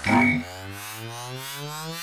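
Electronic soundtrack effect: a short loud hit, then a buzzy synthesizer tone that rises steadily in pitch, a riser sweep building up.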